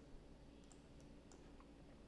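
Near silence with a few faint clicks of a computer mouse.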